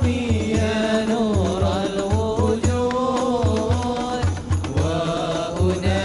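A group of men singing a devotional song together, backed by frame drums (rebana) beating a steady rhythm of deep thumps.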